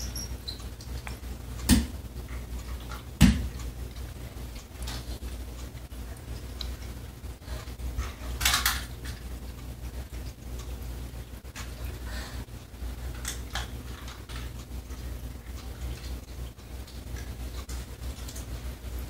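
Small hard toys clacking: two sharp knocks about two and three seconds in, then a brief rustle and a few faint clicks later, over a low steady hum.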